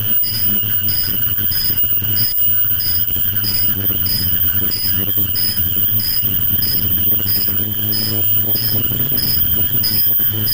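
KF94 mask-making machine running: a steady low hum and a high whine, with a short high-pitched chirp repeating evenly, about three every two seconds.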